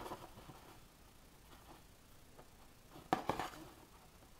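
Faint handling noise of chunky crocheted yarn fabric and loose yarn being moved on a tabletop, with a sharp click at the start and a few more clicks about three seconds in.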